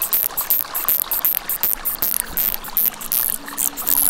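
Shallow creek water trickling and running over mud and stones, a dense, flickering rush.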